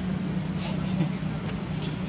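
A steady low mechanical hum, like a motor or engine running, with a brief hiss about half a second in.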